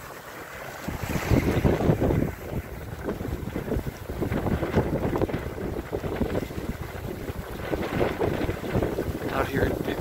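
Wind buffeting the microphone on the deck of a Cal 29 sailboat under sail, with water rushing along the hull. The gusty noise grows louder about a second in.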